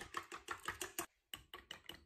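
Chopsticks beating eggs in a stainless steel bowl: quick, light clicking of the chopsticks against the bowl, about six strokes a second, with a brief pause about a second in.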